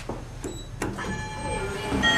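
Schindler 5300 elevator's landing call button pressed with a few clicks, then the elevator's door operator starts with a thin, steady electric whine as the doors begin to slide open near the end.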